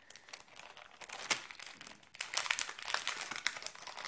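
Clear plastic packaging crinkling and crackling as it is handled and opened by hand, in a run of short crackles that get busier in the second half.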